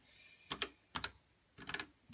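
Keys being typed on an Apple II keyboard: about five separate key clicks, unevenly spaced, the last two close together near the end.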